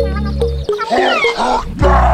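Background music with a steady beat and repeated notes, cut off about two-thirds of a second in by a roar sound effect lasting about a second, after which the music returns.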